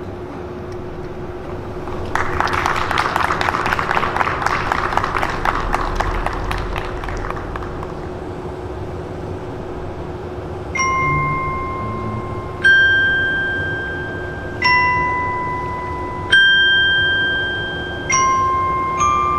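Orchestral bells (glockenspiel-type mallet percussion) playing a slow melody of single ringing notes, about one every two seconds, each dying away slowly. This comes after a shimmering run of rapid metallic tinkles that swells and fades.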